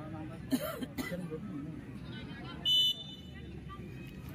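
Spectators chattering along the touchline, cut through about three seconds in by one short, high whistle blast lasting about a quarter of a second, the loudest sound here.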